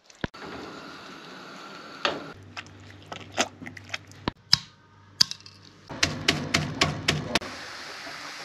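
Metal meat pounder mashing cooked mutton in a stainless steel pot: scattered sharp knocks, then a quick run of about six strikes, roughly four a second. Near the end a steady sizzle of onions frying.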